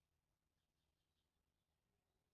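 Near silence: the soundtrack is all but empty.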